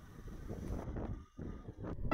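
Faint wind noise on the microphone with a low rumble while riding, dropping away briefly a little past a second in.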